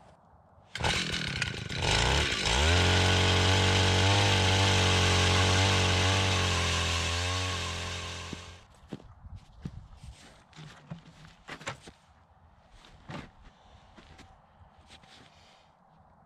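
Gas-powered ice auger engine coming in about a second in and running at high speed while drilling a hole through the ice, its pitch wavering under load, then winding down about eight seconds in. A few faint knocks and clicks follow.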